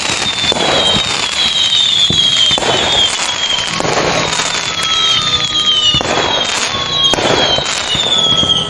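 Fireworks: repeated whistles that each fall in pitch over about a second, over a steady crackle with scattered sharp bangs.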